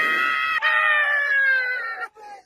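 A man screaming in pain from nose-hair wax being ripped out of both nostrils: one long, high, held cry, broken briefly about half a second in and then held again.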